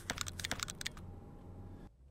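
Low, steady rumble of a moving car heard from inside the cabin. In the first second a quick run of about a dozen sharp clicks, like typing, rises over it. The sound cuts off abruptly near the end.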